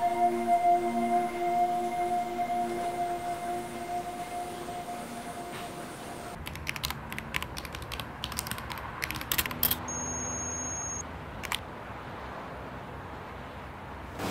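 Held music notes fading out, then fast keystrokes on a computer keyboard in uneven runs from about six seconds in, with a short steady electronic tone near ten seconds.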